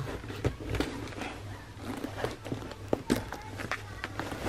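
Scattered light taps and rustles of planner supplies being handled and set down on a desk, over a low steady hum.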